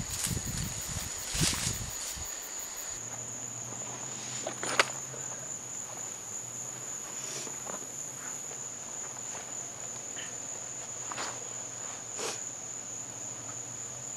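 Steady high-pitched drone of insects. It runs under rustling footsteps in the undergrowth for the first two seconds and a few short, sharp clicks or snaps scattered through the rest.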